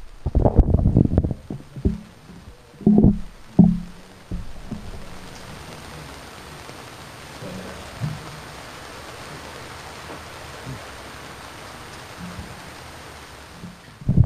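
A few low thumps and rumbles in the first four seconds, then a steady faint hiss of background noise.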